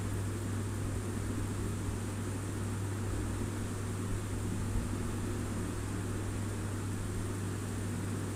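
A steady low electrical-sounding hum with a faint even hiss underneath, unchanging throughout; no distinct strokes stand out.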